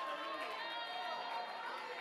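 A congregation of many voices calling out and praying at once, overlapping without any one voice standing out, with a steady held tone running underneath.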